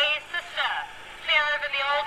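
Indistinct speech in short stretches with brief pauses, thinner and higher than the commentator's voice either side.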